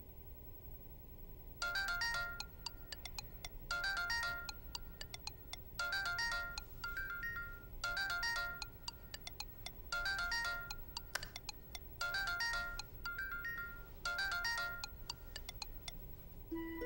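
Mobile phone ringing with a melodic ringtone: a short bright jingle of quick notes that repeats about every two seconds, starting a little under two seconds in, signalling an incoming call.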